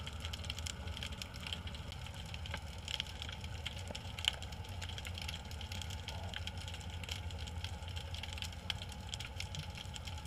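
Underwater ambience: a steady low hum with scattered, irregular crackling clicks.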